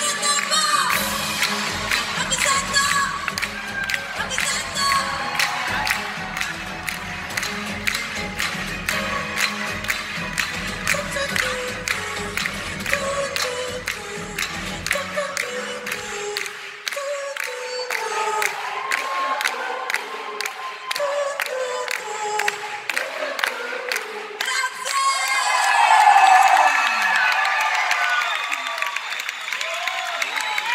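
Live pop band with a female lead singer playing a song's closing section. Drums and bass drop out about halfway through, leaving the voice and sparser accompaniment, with the crowd cheering and a loud swell a few seconds before the end.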